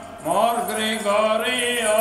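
A man chanting a liturgical hymn into a microphone, holding long, steady notes, with a brief pause just at the start.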